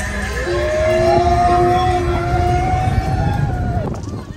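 Slinky Dog Dash roller coaster train launching, with a low rumble under a long drawn-out high sound that rises quickly, holds for about three seconds and falls away near the end.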